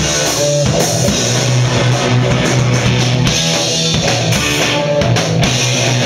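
Punk rock band playing live and loud: electric guitar, bass and drum kit in an instrumental passage with no singing.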